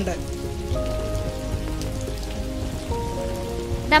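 Soft background music of sustained chords that change about three times, over a low steady rumble.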